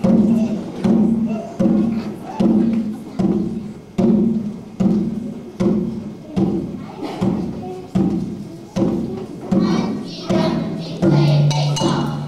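A drum beaten in a steady, slow beat, a little more than one stroke a second, each stroke with a low ringing tone. Near the end a children's choir starts singing over the beat.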